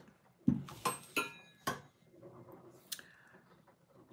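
Solid brass candle sconces knocking and clinking as they are handled and set down: a quick run of knocks over the first two seconds, one of them with a brief metallic ring, then a faint tap near the end.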